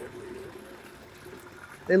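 Water trickling and lapping gently in a live-bait pen, with a faint steady hum underneath.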